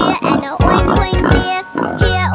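A pig oinking twice, one short grunt and then a longer one, over a children's song with a steady beat.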